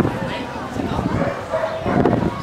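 Dog barking on stage, with voices in the background.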